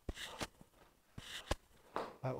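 Sharp hand claps and thuds from a stepping, overhead-clapping warm-up exercise, a few strokes with short breathy rushes between them.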